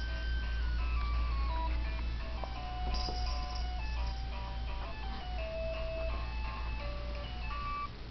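A simple electronic tune of single, clear notes stepping up and down in pitch, like a toy's music box, from the baby play gym's musical toy, over a steady low hum.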